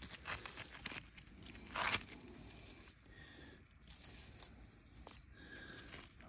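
Scraping and crunching of clay and rock as a crystal pocket is dug out by hand, with small clicks of loose stone. The loudest scrape comes about two seconds in.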